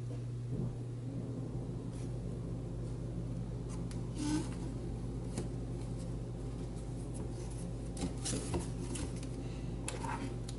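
Light clicks, taps and brief scrapes of thin model-kit lattice pieces being handled and pressed together, scattered irregularly over a steady low hum.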